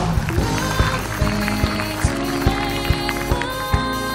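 Band music with a steady drum beat and held chords.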